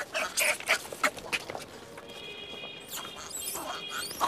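Hanuman langur monkeys giving a quick run of short, harsh calls. A steady high tone comes in about halfway through, and a few more calls follow near the end.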